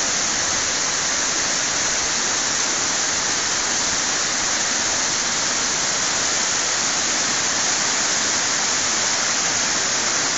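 Waterfall spilling over stepped rock ledges: a steady, even rush of falling water that does not change.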